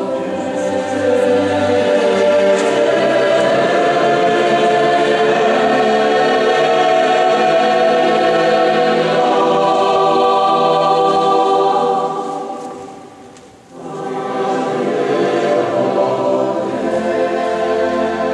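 Mixed choir singing a sustained vocal piece in a church. About twelve seconds in the voices fade away almost to nothing, then the choir comes in again about two seconds later.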